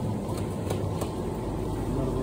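Steady low hum and background noise of a supermarket aisle lined with refrigerated display cases.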